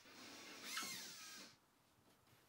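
Faint whine of a cordless drill boring a wall-plug hole in plasterboard. The pitch rises and falls with the trigger, and the sound cuts off about one and a half seconds in.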